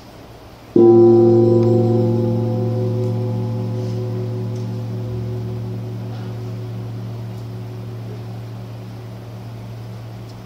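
An altar gong struck once, about a second in. Its deep, wavering tone fades slowly and is still ringing at the end. It marks the elevation of the host just after the words of consecration at Mass.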